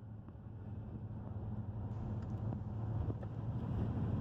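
A van driving at highway speed, heard from inside the cab: steady low road and engine rumble that rises gradually in level.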